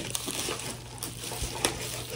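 Bubble-wrap packaging crinkling and crackling as it is handled, with a couple of sharper clicks in the second half.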